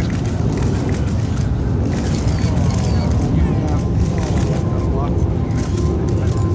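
Several people talking indistinctly over a steady low rumble.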